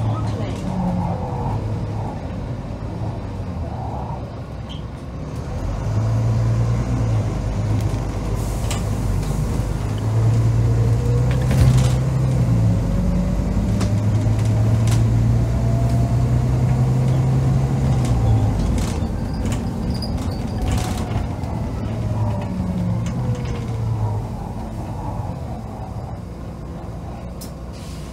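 Volvo B9TL double-decker's diesel engine heard from the lower deck, driven hard: the engine note grows louder about six seconds in and holds loud through the middle, with a faint whine rising and then falling over it. It eases off near the end as the bus slows for a stop.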